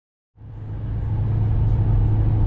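Steady low drone of a car's engine and road noise heard from inside the cabin while cruising, fading in from silence about a third of a second in.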